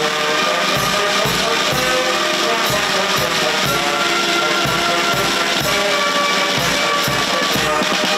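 Ceremonial brass band playing, with a steady drum beat of about two strokes a second under the brass melody.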